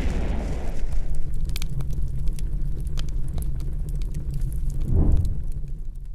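Fire sound effect for a burning logo: a steady deep rumble with scattered sharp crackles. It opens on a fading surge and swells again about five seconds in.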